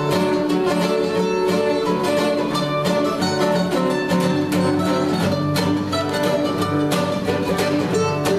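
Mandolin and acoustic guitar playing an old-time country tune together, the mandolin picking a lead over the guitar's strummed rhythm, with no singing.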